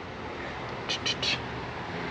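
Steady outdoor background noise with three short scuffs about a second in.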